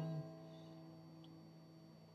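The last notes of an acoustic guitar ring on and die away within the first half second, leaving near silence.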